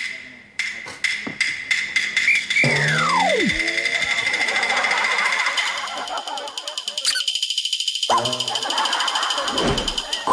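Comedy sound effects from the show's editing, laid over background music: a whistle sliding steeply down in pitch about three seconds in, then a high, rapidly pulsing tone through the second half, with a short burst of voices near the end.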